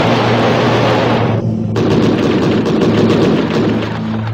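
Six-barrel 30 mm rotary cannon of a MiG-27 firing in two long bursts, each a continuous burr of shots too fast to tell apart, with a brief pause about a second and a half in.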